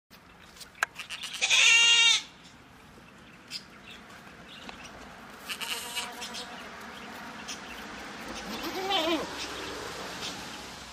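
Goats bleating three times: a loud, high, wavering bleat about a second and a half in, a fainter one around the middle, and a lower bleat that rises and falls near the end. A few short clicks come just before the first bleat.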